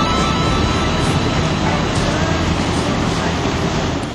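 A steady rushing, whooshing noise effect in the song's recording, with a low hum beneath it, easing off gradually and dropping away at the end.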